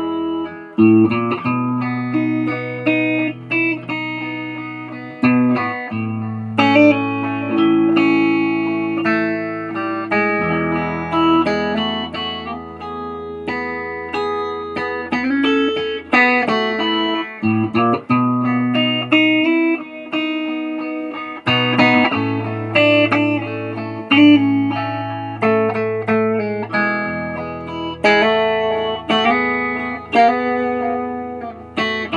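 Telecaster-style electric guitar fitted with Nuclon magnetic pickups, playing a continuous melodic line of picked single notes and chords. Held low bass notes underneath change pitch every few seconds.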